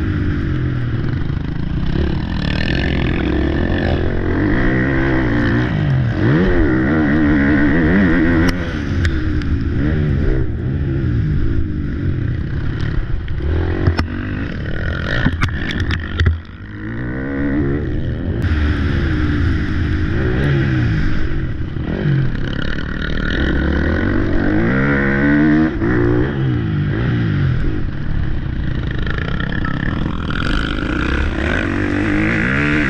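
Motocross bike engine heard from on board, revving up and dropping back over and over through gear changes and corners. A few sharp knocks come about halfway through, followed by a brief dip in the engine sound.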